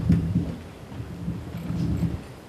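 Microphone handling noise: low, muffled rumbling with a few dull bumps, starting suddenly and going on unevenly.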